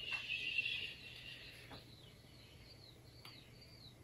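A picture-book page being turned, a papery rustle in the first second. A few faint high chirps follow, about two-thirds of the way through.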